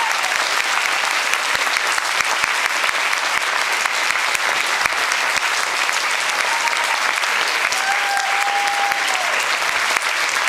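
Hall audience applauding steadily at the end of a song, a dense even clatter of hand claps. A brief held tone, a cheer or whistle from the crowd, rises above it about eight seconds in.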